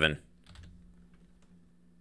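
A few faint keystrokes on a computer keyboard, about half a second to a second in.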